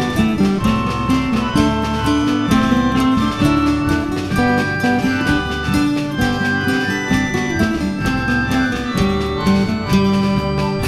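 Instrumental folk music: a quick run of plucked acoustic guitar notes with a sustained melody line above it, no singing.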